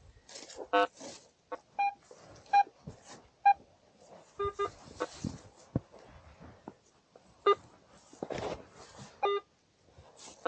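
Metal detector giving about ten short beeps at two or three different pitches, some higher and some lower, as its search coil is swept over grass.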